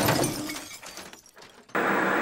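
A glass-shattering sound effect dies away, then a steady burst of TV-static hiss starts suddenly near the end.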